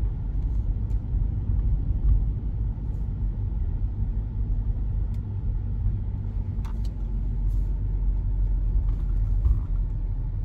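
Steady low rumble of a car's engine and road noise heard from inside the cabin while driving slowly, with a few faint light clicks.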